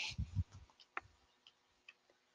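A few faint, sharp single clicks spaced about half a second apart, the first and loudest about a second in, after a couple of soft low thumps at the start.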